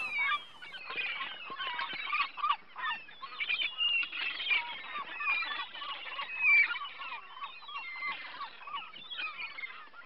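A flock of fowl calling over one another: a dense, continuous chatter of many short overlapping calls.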